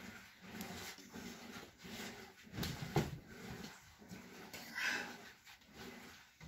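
Faint panting breathing, in soft pulses about twice a second, with one light click about three seconds in.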